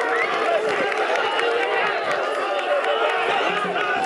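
A large crowd of men shouting and calling out at once, many voices overlapping into a steady din, as they grapple to push over a festival float.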